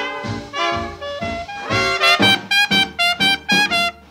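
Jazz recording with brass instruments, trumpet to the fore, playing a run of short, clipped notes in the second half.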